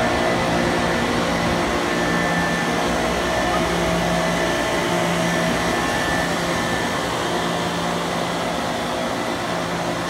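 2005 Carrier 160-ton air-cooled chiller running at 100% load, all seven compressors and all condenser fans running: a steady, even hum and rush of air with a few steady tones in it.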